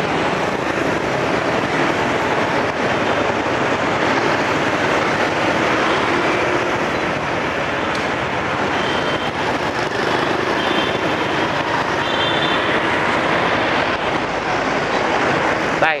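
Steady road and wind rush from riding a motorbike through city street traffic, with the engines of surrounding motorbikes and cars mixed in.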